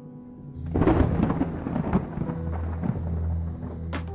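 A sudden loud rumbling crash, like a thunderclap, starts under a second in and dies away over the next second or so. Low, steady film-score drone tones run underneath.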